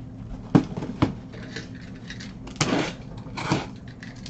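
Cardboard boxes being handled and opened: two sharp knocks about half a second apart near the start, then two longer scraping, rustling sounds of cardboard about two and a half and three and a half seconds in.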